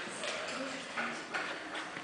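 Faint, indistinct voices in the room, with a few light ticks over a low hiss.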